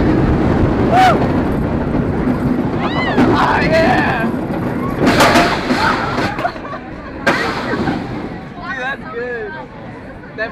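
Riders shouting and cheering over wind rushing past the microphone on an inverted roller coaster. The rush of air fades about halfway through as the train slows.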